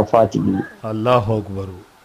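A man's voice speaking, softer and more drawn-out than the talk around it, with a short pause before it trails off near the end.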